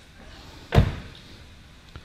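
The driver's door of a 2011 Volvo XC90 being shut, a single thud about three-quarters of a second in.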